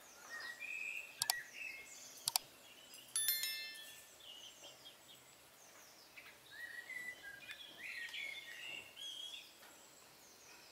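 Small birds chirping on and off, with two sharp clicks about one and two seconds in and then a bright ringing bell chime about three seconds in: the click-and-bell sound effect of a subscribe-button animation.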